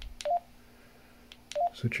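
Baofeng K6 handheld radio's key beep, twice, about a second and a quarter apart, as the A/B button is pressed to switch between its A and B displays. Each is a button click followed by a short beep that steps up in pitch.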